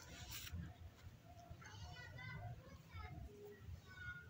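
Faint voices in the background, over a low steady hum.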